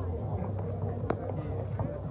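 Background chatter of people talking nearby, with no one voice in front, and one sharp knock about a second in.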